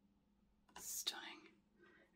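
A woman's short whispered, breathy utterance about a second in, with no voiced pitch, heard against quiet room tone.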